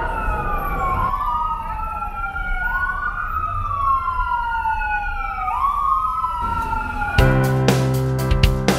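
Emergency vehicle siren wailing in the street, each cycle rising quickly and then falling slowly over about two seconds, over traffic noise. About seven seconds in, music with a steady beat and keyboard tones starts abruptly.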